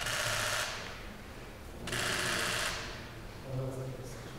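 Rapid clicking of camera shutters firing in burst mode, in two runs of about a second each, at the start and again about two seconds in.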